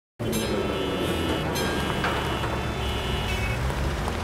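Busy street traffic: a steady low rumble of engines with several car horns honking over one another, starting suddenly.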